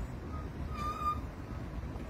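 Outdoor background noise with a low rumble, and a faint, thin high call about a second in.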